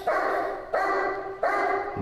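German Shepherd barking at a bite-suit helper while guarding him after the out in protection-work secondary control: three long, loud barks in quick, even succession, each held about two-thirds of a second.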